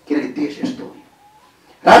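A man speaking into a microphone, a short pause about a second in, then louder speech resuming near the end.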